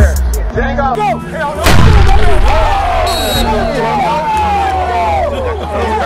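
A music beat cuts out, and about two seconds in a single loud boom like a gunshot or cannon shot hits and dies away over about a second. Voices and music carry on under and after it.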